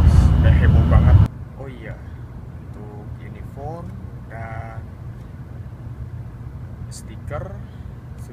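Loud low rumble of a moving train heard inside the carriage, with a voice over it, cut off abruptly about a second in. After that a much quieter steady hum of the carriage remains, with faint, scattered voice sounds.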